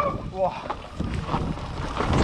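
Mountain bike riding fast downhill on a dirt trail: wind rushing over the camera microphone, with tyres on dirt and irregular knocks as the bike goes over bumps. A brief falling whine about half a second in.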